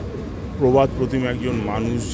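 A man speaking in Bengali into reporters' microphones, with pauses between phrases.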